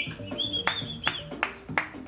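Music: a held high note over a pulsing low bass line, with a string of sharp percussive hits in the second half.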